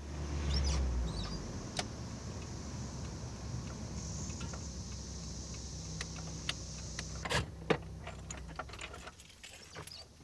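Car engine running, heard from inside the cabin, a steady low rumble that comes up at once at the start and dies down about nine seconds in, with a few sharp clicks and a jingle of keys near the end.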